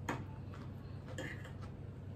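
Forks clicking and scraping against china plates while eating, a few light irregular ticks over a faint steady low hum.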